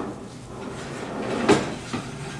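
Baking pans and the pulled-out rack being handled at an open oven: a low rattle, then one sharp metal knock about one and a half seconds in.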